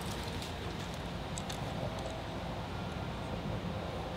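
Steady low background rumble of outdoor ambience, with a few faint light clicks about a second and a half in.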